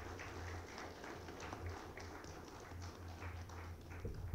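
Audience applauding: many quick, irregular hand claps, fairly faint.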